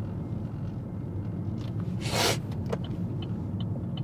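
Road noise inside a moving 2016 Chevy Malibu: a steady low rumble of tyres and engine, with a brief hiss about two seconds in.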